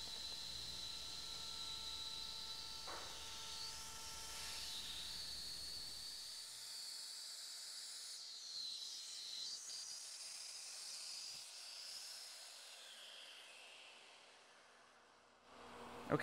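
Shaper Origin handheld CNC router's spindle running faintly with a steady high whine and hiss as it makes a light finishing pass around the outline in wood, fading away near the end.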